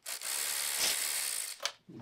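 Cordless ratchet running steadily for about a second and a half as it spins an 8 mm bolt out of a motorcycle skid plate, then stopping, with a short click just after.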